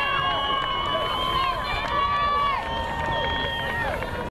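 A crowd of spectators shouting and cheering, many voices overlapping, some held long calls among them.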